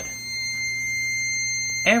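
Fire alarm control panel's piezo buzzer sounding a steady, high electronic beep, over a low steady hum.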